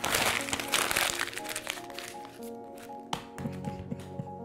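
A sheet of sketch paper crumpled by hand: dense crackling for the first second and a half, tailing off, then a single sharp click near the end, over background music.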